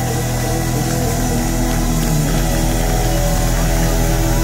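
Live hard rock band holding a chord at the end of a song: guitars, bass and keyboards ring on over a steady low drone, with no drumbeat.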